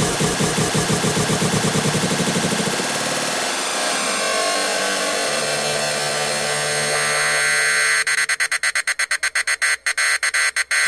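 Hardcore electronic dance music from a DJ mix. A fast pulsing beat in the first few seconds gives way to a sustained noisy synth build, which breaks into rapid chopped stutters about two seconds before the end.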